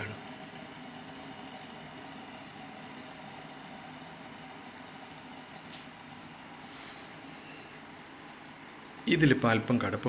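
A cricket chirping: a high, even pulse repeating a little under twice a second, over faint background hiss. A man's voice comes in near the end.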